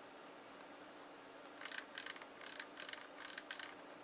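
Channel selector knob being fitted onto the top of a Motorola MTS2000 handheld radio: a quick run of faint plastic clicks and scrapes, starting about one and a half seconds in and lasting about two seconds.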